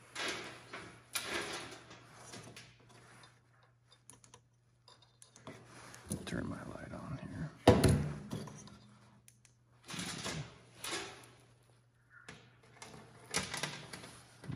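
Square-ground saw chain clinking and rattling as it is handled and held up by hand, in scattered bursts with a sharp clack about eight seconds in, over a low steady hum.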